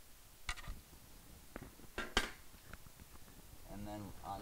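A few sharp clicks and knocks of hard plastic being handled, the loudest two close together about two seconds in: a white plastic freezer cover piece and a screwdriver being handled.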